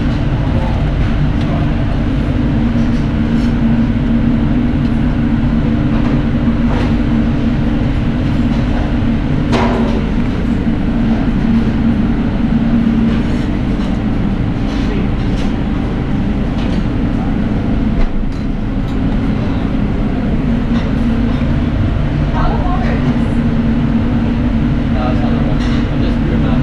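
Busy professional kitchen in service: a steady low hum of extraction and kitchen machinery, with scattered clinks and knocks of metal utensils and pans. One sharper clatter comes about ten seconds in.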